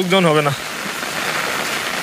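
Steady rain falling, an even hiss that is left on its own once a voice stops about half a second in.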